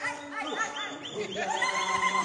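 Celebratory ululation: a high trilling cry that warbles rapidly, several times a second, and grows louder and steadier about one and a half seconds in.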